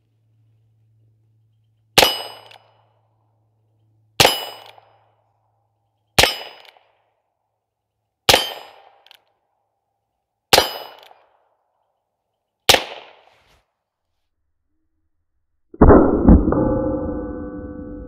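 Six .22 LR shots from a Heritage Barkeep Boot single-action revolver, about two seconds apart. Each is a sharp crack followed by a short metallic ring, and a few of them strike a 6-inch AR-500 steel plate. Near the end comes a louder, deeper boom that rings on for a couple of seconds.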